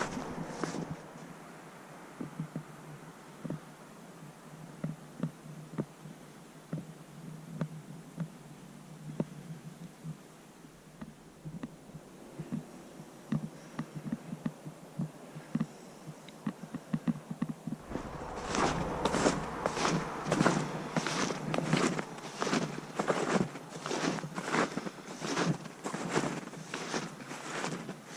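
Footsteps of a person walking in snowshoes on a snowy trail: faint and scattered for most of the first half, then louder, steady steps about two a second from a little past the middle to the end.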